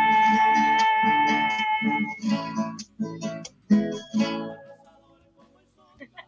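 Acoustic guitar strumming the ending of a folk song, with a woman's long held final sung note over the first two seconds. A few last strummed chords follow and die away about four and a half seconds in.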